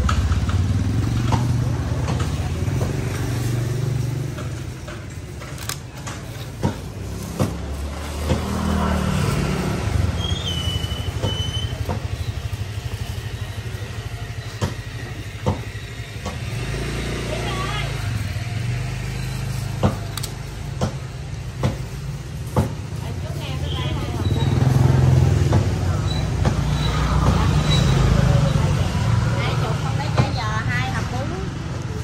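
Street ambience of passing road traffic, a low engine rumble that swells and fades, loudest over the last few seconds, with indistinct voices around a busy stall and a few sharp clicks.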